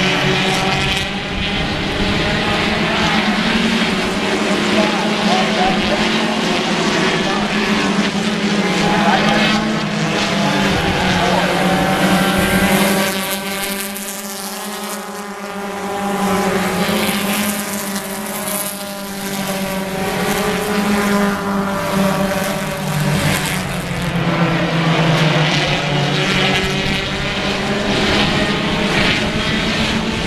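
A pack of four-cylinder stock cars racing on a short oval, their engines running hard and steadily as the field laps. About halfway through, the engine pitch bends up and down as the pack sweeps past.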